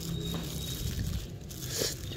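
Thin plastic bag crinkling as it is handled, with a short, louder rustle near the end.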